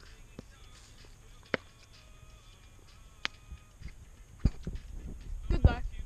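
Quiet background broken by a couple of sharp clicks, then a run of low thumps and rustling from handling food and a plastic plate close to the microphone in the second half, with a short voiced sound just before the end.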